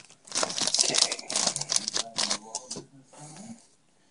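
Foil trading-card booster pack wrapper crinkling and crackling as it is handled by hand. The crackle is dense for the first two and a half seconds, then turns fainter and sparser.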